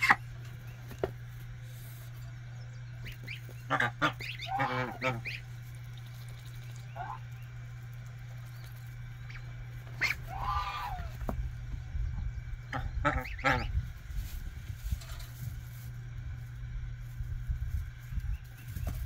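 Broody white domestic goose on her nest giving short, soft honking calls in little runs: a few about four to five seconds in, a longer one around ten seconds in, and more soon after. A steady low hum runs underneath.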